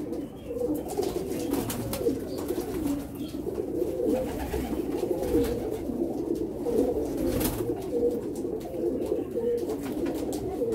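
Domestic pigeons cooing in a loft: many overlapping coos at once, going on steadily without a break.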